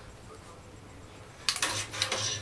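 A metal stirring rod clinking and scraping against the bottom and side of a metal pot of cheese curds, starting suddenly about one and a half seconds in.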